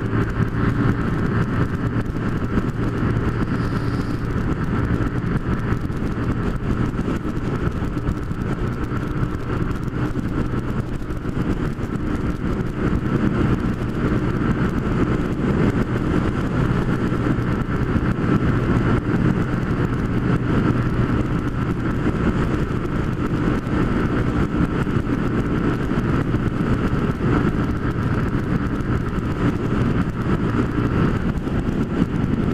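Honda CG 150 Fan's single-cylinder four-stroke engine running steadily at highway cruising speed, with constant wind rush over the microphone.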